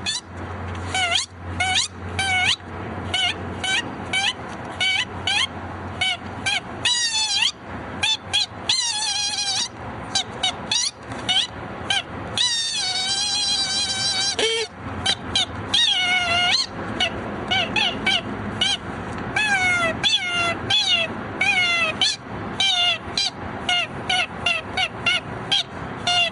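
A long string of short, high-pitched squeaks in quick succession, each sliding up or down in pitch, with a few longer wavering squeals among them.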